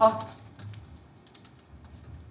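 Faint, scattered light clicks and crinkling from a paper banknote being handled and folded in the hands, after a single short spoken word at the start.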